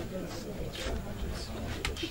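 Low, indistinct murmuring voices, with a few short soft hisses and a sharp click near the end.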